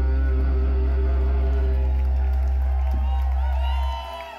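Live rap-rock band holding a loud sustained chord, electric guitar over a deep steady bass drone. It cuts off sharply just before the end, as the song ends.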